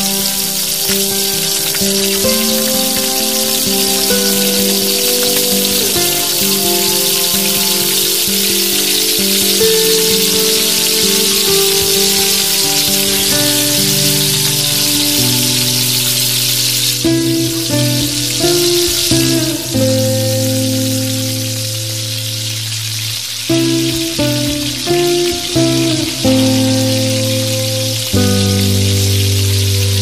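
Hot oil sizzling steadily as battered paneer pieces deep-fry in a miniature iron kadai. Background music with long held notes plays over it.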